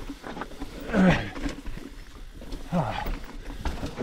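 A mountain biker grunting twice with effort, about a second in and just before three seconds, each a short vocal sound falling in pitch, over the low rumble and knocks of the bike rolling down rough trail.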